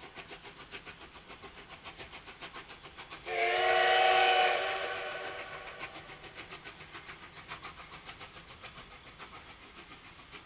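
JNR Class C11 steam locomotive of the Oigawa Railway running with a rapid, even beat, about five or six a second. About three seconds in it sounds its steam whistle: one long blast that fades away over the next two seconds while the beat carries on.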